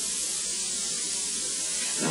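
Steady high-pitched hiss of recording noise, with nothing else sounding.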